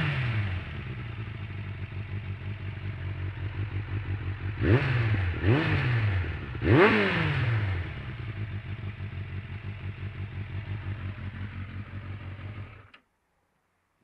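Suzuki Bandit 600's inline-four idling through its Beowulf aftermarket exhaust can, blipped three times about five, five and a half and seven seconds in, each rev rising and dropping straight back to idle. The engine cuts off suddenly about a second before the end.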